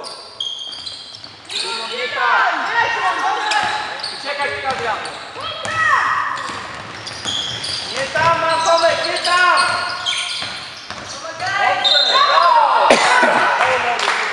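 Basketball game on an indoor court: many short, high sneaker squeaks on the sports-hall floor, with the ball bouncing. A single sharp knock comes near the end.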